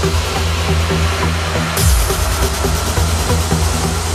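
Electronic dance music: a heavy, steady bass with repeated quick falling pitch sweeps, and the high end filtered out about two seconds in.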